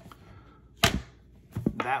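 A single sharp knock about a second in, a plastic disc case set down on a tabletop; a man starts speaking near the end.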